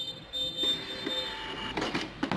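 APOS A168 80 mm thermal receipt printer printing a sales receipt: a steady whining tone from its paper-feed motor. Near the end comes a short burst as the automatic cutter cuts the paper.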